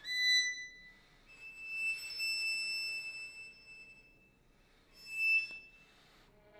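Violin alone playing sparse, very high notes: a short high note at the start, then one long note held about two seconds, then another brief high note near the end, with quiet gaps between.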